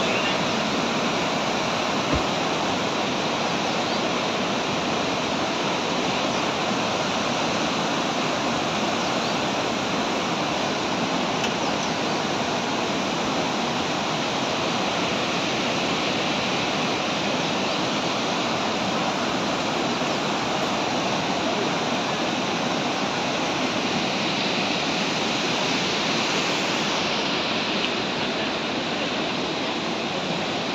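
Steady rushing of water pouring out of a dam's open spillway gates and churning down the river rapids below.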